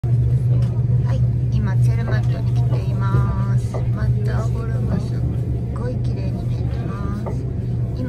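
A steady low hum, like a motor or engine running, with people's voices talking over it.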